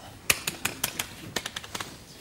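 Keys being typed: about nine quick, irregular clicks, as a name is entered at a keyboard.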